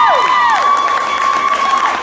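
A small audience cheering and clapping, with several long, high whoops held over the applause, the last one trailing off near the end.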